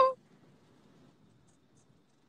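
A person's long, wavering 'ohh' with vibrato cuts off just after the start; then near silence, only faint room tone.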